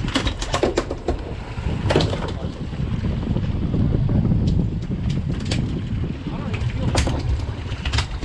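Steady low rumble of wind and boat noise on the open deck of a fishing boat, with scattered sharp clicks and knocks of tackle and gear, the loudest about two seconds in and about seven seconds in.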